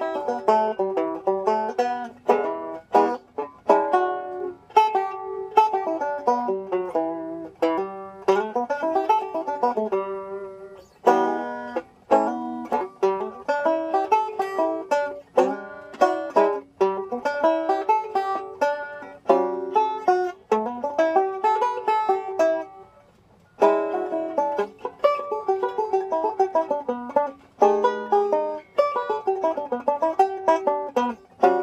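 Five-string resonator banjo, fingerpicked: an improvised 12-bar blues line in E built from G pentatonic shapes, a steady stream of plucked notes with one brief pause about two-thirds of the way through.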